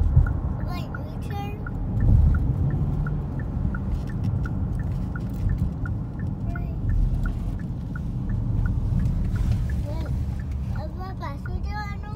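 Road and engine rumble inside a moving car's cabin, with the turn-signal indicator ticking steadily about twice a second.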